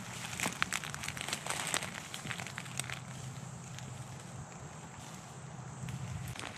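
Footsteps crunching through dry leaf litter and twigs: a string of sharp crackles in the first few seconds, then fainter rustling over a low steady hum.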